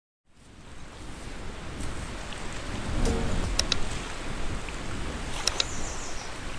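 Steady rush of water waves and wind, fading in over the first second, with a few brief high clicks.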